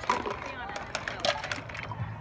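Background chatter of young children and adults outdoors, mixed with a few light knocks.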